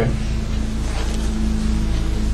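Room tone: a steady low hum with faint background hiss and no speech.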